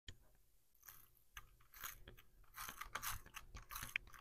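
Faint scratchy, crackling strokes of a tape runner laying adhesive onto the back of a neoprene coaster, with light clicks, mostly in the second half.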